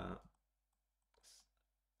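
Near silence after a brief spoken "uh", with one faint, short click a little over a second in.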